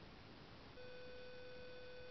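A steady electronic beep tone starts about three-quarters of a second in and holds at one pitch, over faint room noise.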